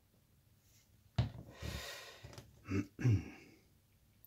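A man's noisy breath about a second in, then he clears his throat twice near the end; he is getting over a cold.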